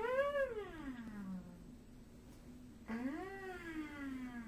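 A baby cooing: two long drawn-out vocal sounds, each rising and then falling in pitch, the second beginning about three seconds in.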